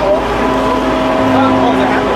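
A steady low droning hum with several held tones over a rumble, with faint voices under it.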